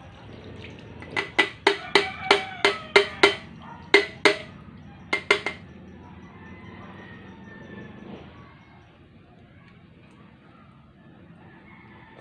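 A stainless steel pot knocked against a wire-mesh strainer while emptying fried ginger slices and oil: about a dozen sharp, ringing metal clinks, roughly three a second, with a last pair about five seconds in, then a faint rustle of the ginger settling in the mesh.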